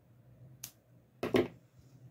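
A sharp snip of scissors cutting nylon beading thread, then about a second later a louder knock and clatter, the scissors being put down on a wooden board.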